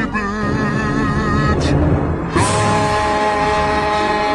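Music from a song: a voice singing with vibrato, then a new held note comes in sharply about two and a half seconds in.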